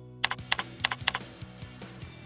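Typing on a computer keyboard: a quick run of keystrokes that stops a little over a second in, over steady background music.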